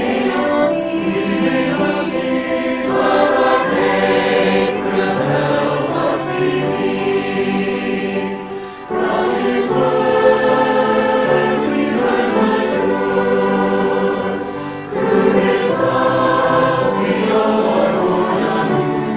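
A choir singing a Christian worship song in sustained phrases, with short pauses between lines about nine and fifteen seconds in.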